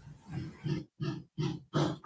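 A person making about five short, soft nonverbal voice sounds in quick succession, roughly three a second, like a suppressed chuckle or a catch in the breath.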